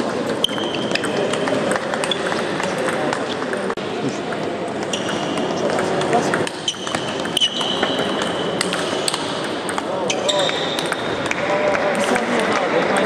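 Table tennis ball clicking back and forth off bats and table in a rally, with sharp clicks coming throughout over steady background voice chatter in the hall.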